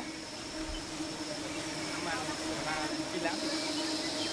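A steady low hum and a steady high whine over background noise, with faint voices talking in the distance.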